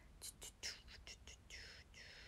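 A woman whispering faintly: a few short, breathy syllables without voice.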